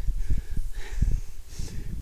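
Low, uneven rumble of wind buffeting a handheld camera's microphone, with footsteps rustling through flattened long grass.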